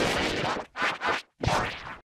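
Harsh, scratchy, digitally distorted noise from bitcrushed and vocoded audio effects. It runs steadily for a moment, then breaks into choppy bursts with sudden dropouts to silence.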